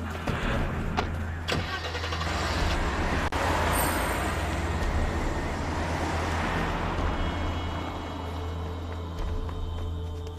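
A couple of sharp knocks, like car doors shutting, then an SUV drives off over a gravel drive. Its engine and tyre noise swells for a few seconds and then fades away.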